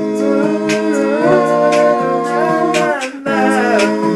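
Male a cappella vocal group humming a hymn in close harmony, holding steady chords that shift pitch now and then, with short breathy "ch" sounds marking the beat. The chord breaks off briefly a little after three seconds, then comes back in.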